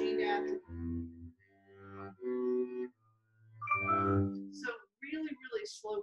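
Double bass played with a bow: a slow run of separate sustained low notes from an etude, stopping about four and a half seconds in.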